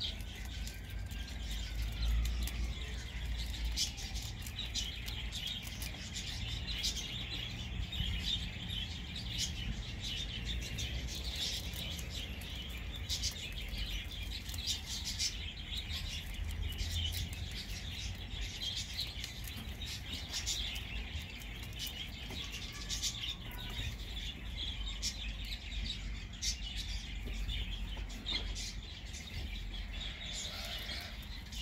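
Small birds chirping and twittering continuously, over the soft crunching of a young rabbit chewing a leaf.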